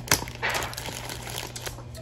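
Clear plastic zip-top bag crinkling as it is handled and filled, with a sharp tick just after the start.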